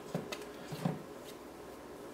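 Faint, soft squishing of sticky yeast dough being pulled by hand off a stand mixer's C-shaped dough hook. There are a few short sounds in the first second, then it goes quieter.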